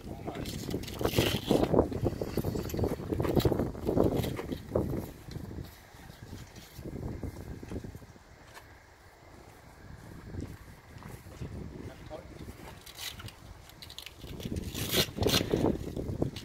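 Canvas awning rustling and handled, with irregular knocks and scrapes from the awning poles as the annexe is fitted.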